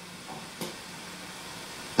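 Low steady hiss of room tone with a faint steady hum, and two soft small knocks within the first second.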